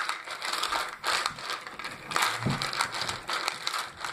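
Irregular rustling and clattering of hands rummaging off-camera through Bean Boozled jelly beans and their packaging to pick one at random.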